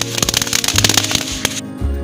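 A ground fountain firework spraying sparks, with dense rapid crackling that cuts off suddenly about one and a half seconds in. Background music plays underneath throughout.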